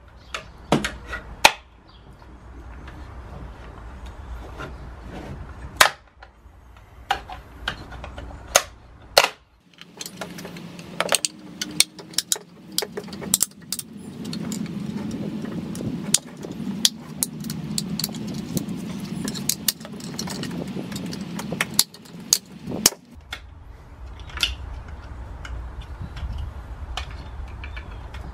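Screwdriver prying and breaking open the plastic case of a 12 V sealed lead-acid Power Wheels battery: many sharp clicks, snaps and cracks of plastic giving way, with metal scraping on plastic. A steady low drone runs under the middle of it for about twelve seconds.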